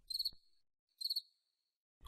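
Two faint cricket chirps about a second apart, each a quick high-pitched trill of a few pulses.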